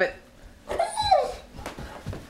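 German Shepherd giving one short, whining bark about a second in, rising then falling in pitch, as it reacts to a truck in the street. A few soft knocks follow near the end.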